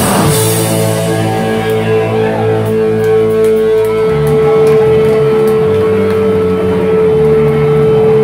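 Hardcore punk band playing live, recorded loud on a phone: distorted electric guitar and bass under one high tone held steadily, with the lower chord changing about halfway through.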